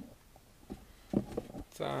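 A man's voice in a small room: a few short muttered sounds and then a drawn-out 'um' near the end, after a brief knock right at the start.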